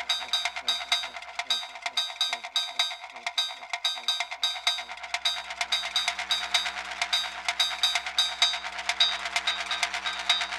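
Live electronic dance music from a Maschine groovebox and a Behringer TD-3 bass synth, with the kick drum dropped out: fast, even high percussion hits over a repeating line of short falling synth notes. About halfway through, held low synth tones come in beneath.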